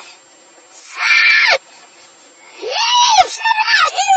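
A person screaming twice, a short scream about a second in and a longer one near the end whose pitch rises and then falls. The sound is played backwards.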